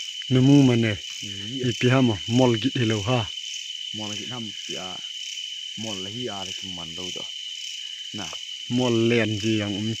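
A steady, high night-time insect chorus of crickets, with a continuous shrill tone and a fast pulsing trill. A man's low voice talks over it in short runs of syllables.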